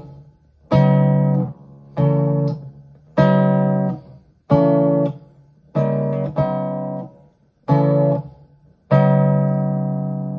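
Acoustic guitar chords strummed slowly, about eight in all, roughly one every second and a quarter, each rung out and then damped before the next: a slow practice of switching back and forth between chord shapes.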